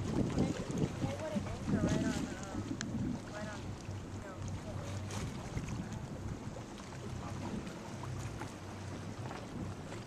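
Wind buffeting the microphone on a boat under way, over a steady low hum and water noise, with faint voices in the first few seconds.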